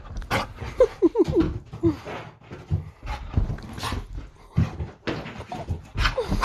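American Staffordshire terrier puppy tearing around with the zoomies: a busy run of thumps and scuffles, with a few short whines about a second in.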